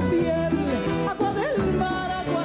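A woman singing into a microphone over instrumental accompaniment. Her voice glides between notes, and one note swoops up and back down about a second and a half in.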